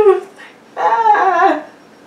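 A woman crying: two high, wavering sobbing wails, one right at the start and a longer one about a second in.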